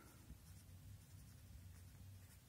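Faint scratching of a pencil lead on paper as a word is written by hand.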